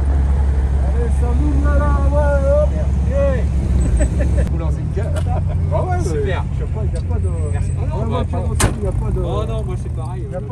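Low, steady rumble of an idling car engine, heaviest for the first four seconds and lighter after, under the chatter of onlookers.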